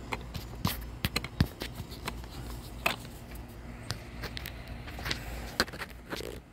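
Irregular sharp clicks and light knocks as a metal hex key turns the clamp bolt of a plastic roof-rack crossbar foot, tightening it down.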